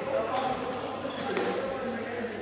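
A foot-shuttlecock rally in a sports hall: a few sharp taps of feet striking the shuttlecock and of players' feet on the hall floor, the first near the start and another about half a second in, echoing in the large hall.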